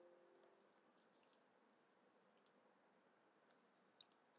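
Near silence with a few faint computer mouse clicks, one pair about a second in and another a little past two seconds. At the very start a steady tone dies away.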